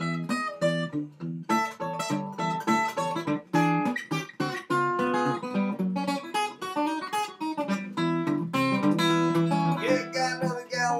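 Small-bodied acoustic guitar fingerpicked in a ragtime blues style: a steady run of low bass notes under melody notes picked on the treble strings.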